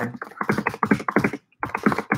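Computer keyboard being typed on quickly, a rapid run of keystroke clicks with a short pause about a second and a half in.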